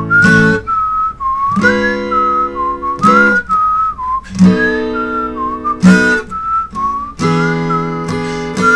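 A whistled melody over strummed acoustic guitar chords; the guitar strikes a chord about every second and a half while the whistle moves through the tune.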